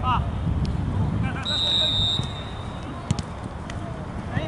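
Outdoor football match sound: players' distant shouts over a low rumble of wind on the microphone, a short steady high whistle about a second and a half in, and a single sharp knock just after three seconds.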